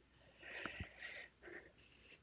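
Faint breaths at a close microphone, three short puffs of air, with a couple of soft clicks.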